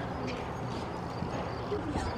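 A horse's hoofbeats on the soft dirt footing of a riding arena, fairly faint.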